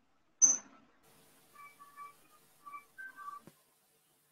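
A short sharp hiss about half a second in, then a few faint whistled notes, separate and at changing pitches, followed by a soft click.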